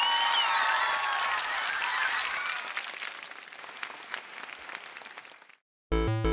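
Crowd applause, loudest at first, fading away over about five seconds and then stopping abruptly.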